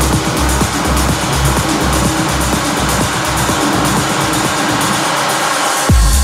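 Techno track with a steady kick drum and pulsing bass under a dense synth wash. Near the end the kick and bass drop out for about a second and a half, then come back in.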